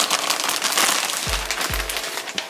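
Clear plastic bag crinkling and crackling as a scrunchie is pushed into it, over background music with a steady kick-drum beat.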